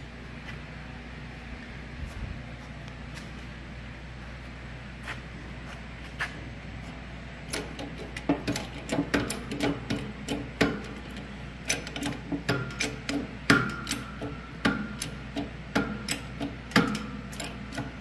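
Shop press bearing down through wooden blocks on a bent steel tractor hood under load: a steady low hum at first, then from about seven seconds in a run of sharp, irregular clicks and knocks with a brief squeak.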